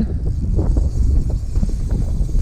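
Wind buffeting the microphone with a low rumble, over a spinning reel's drag clicking in short irregular runs as a hooked lake trout pulls line off it.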